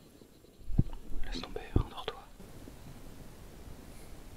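A man whispering one short line, with two soft low thumps, one just under a second in and another a second later.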